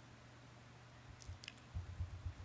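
Quiet room tone over a lecture microphone with a steady low hum, a few faint clicks about midway, and soft low thumps near the end.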